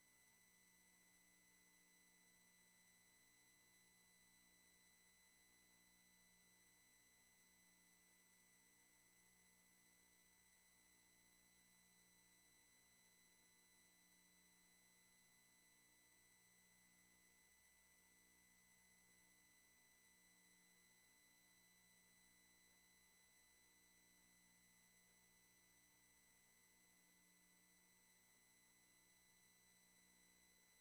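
Near silence: only a faint, steady set of thin electrical tones from the audio feed.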